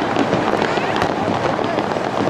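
Aerial fireworks shells bursting and crackling in quick succession, many sharp pops over a continuous rumble, with crowd chatter underneath.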